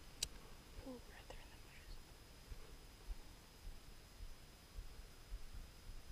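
Near quiet: a single sharp click just after the start, a brief faint murmured voice about a second in, and scattered low bumps of wind or handling on the microphone.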